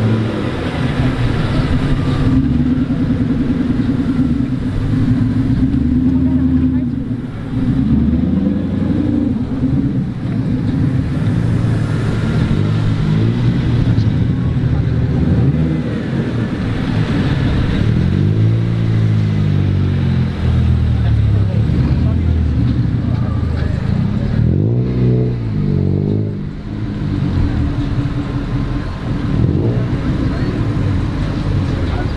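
Car engines running at low speed as several cars pull out one after another. In the second half the engine pitch rises and falls twice, as a car revs and eases off.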